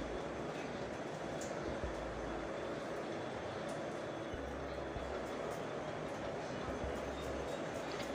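Steady, even background hiss with a few faint short clicks.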